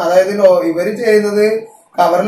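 Speech only: a person talking, with a short pause near the end.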